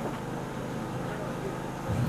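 Steady low hum of room and sound-system noise, with a faint voice in the background.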